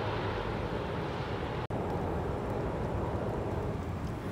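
Wood-Mizer LT40 portable sawmill's engine running steadily between cuts, cutting out for an instant just under two seconds in.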